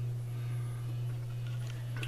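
A steady low hum, with a few faint clicks late on.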